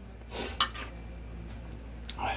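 A spoon scraping and then clinking once against a metal baking pan as chili is spooned onto the buns, the click about half a second in being the loudest sound, over a low steady hum.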